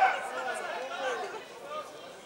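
Several men's voices shouting and calling out at once, loudest at the very start and dying down over the next second or so.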